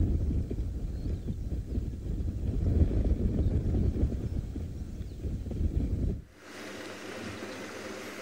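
Wind buffeting the microphone, an uneven low rumble. About six seconds in it cuts off suddenly to the quieter, steady hum of a game-drive vehicle's engine moving slowly along a track.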